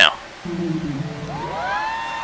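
Live concert music from a played video clip: a low sustained note, then a high held note that slides up into place about a second in.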